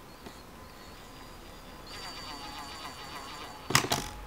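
Cordless impact driver run in a short burst near the end, a quick rattle of impacts as it drives a screw into the lid of a wooden hive box.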